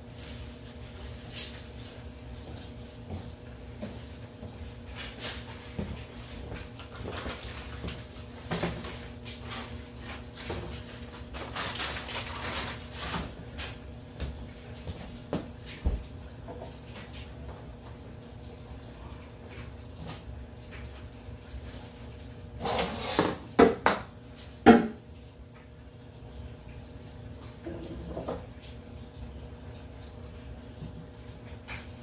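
Scattered hard knocks and clatter of PVC pipe and fittings being handled and fitted at a wooden stand, with a burst of louder knocks about three-quarters of the way through, over a faint steady hum.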